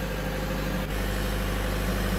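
Two Kubota V3800T four-cylinder turbo-diesel generator sets running steadily in parallel. About a second in, the low engine note grows slightly louder as roughly 43 kW of resistive load is applied and shared between the two sets.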